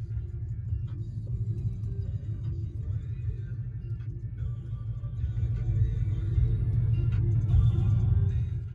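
Low, steady road rumble inside a moving car's cabin, with music playing over it.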